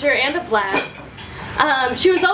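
A woman's voice giving a speech, with a quieter pause in the middle, while dishes and cutlery clink at the tables.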